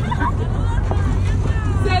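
Low, steady rumble of pickup trucks on a rough dirt road, heard from a truck bed, with people's voices over it.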